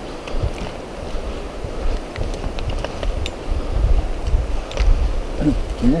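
Wind rumbling on the microphone during a walk, surging unevenly, with scattered light ticks and thumps from footsteps and trekking poles on the trail.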